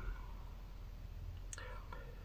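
Quiet pause between a man's sentences: low room tone inside a closed van, with a faint breath and a soft mouth click near the end.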